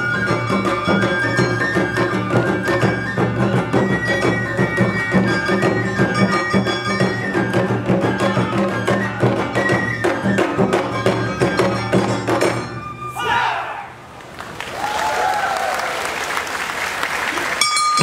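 Awa Odori festival music, live: a high flute melody held over a brisk rhythm of drums and a small gong. About thirteen seconds in the tune breaks off with a falling sweep. A noisy stretch of crowd sound follows, and the music starts again near the end.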